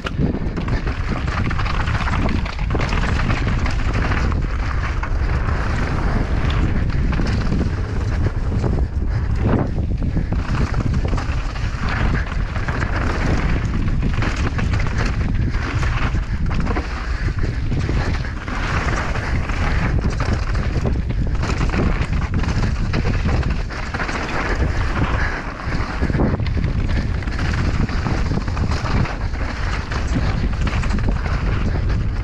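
Downhill mountain bike ridden fast down a dirt and rock trail: the rumble of knobby tyres on loose ground and frequent clattering knocks from the bike over bumps, under heavy wind buffeting on the action camera's microphone.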